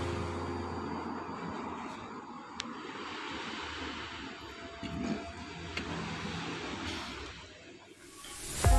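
Steady low rumbling background noise, fading towards the end, with a few faint light clicks.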